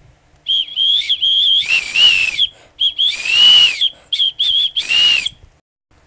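Pigeon-calling whistle blown in a series of short warbling notes, with two longer, louder notes about 2 and 3.5 seconds in, the second dipping and rising in pitch. The call is made to copy a pigeon's cry and is used to call a pet pigeon.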